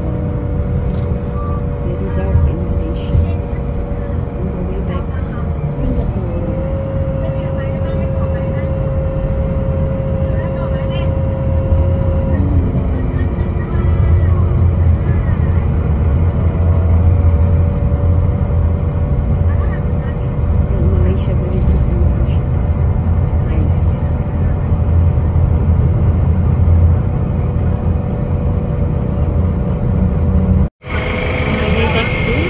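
Low, steady road rumble inside a moving bus at night. A steady hum holds for about the first twelve seconds, then stops.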